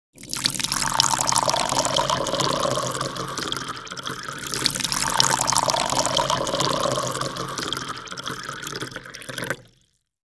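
Sound effect of splashing, pouring water, swelling twice and then cutting off abruptly just before the end.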